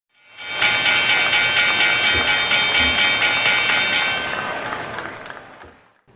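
Intro music sting: a sustained electronic chord pulsing about four times a second, which fades out over the last two seconds.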